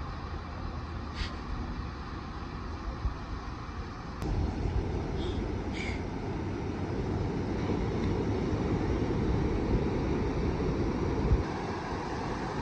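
Ocean surf breaking, with wind rumbling on the microphone: a steady low rush that jumps louder about four seconds in.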